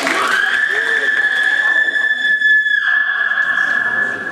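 A loud, high-pitched tone held very steady for about four seconds, rising briefly as it starts.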